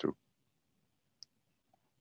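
One faint, brief computer mouse click about a second in. Apart from the end of a spoken word at the very start, the rest is near silence.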